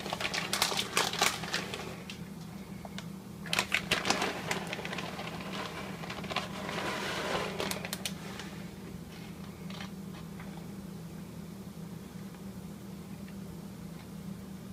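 Plastic bag of shredded mozzarella crinkling and rustling as the cheese is shaken out over a lasagna, in three bursts in the first half, growing fainter after about 8 seconds. A steady low hum runs underneath.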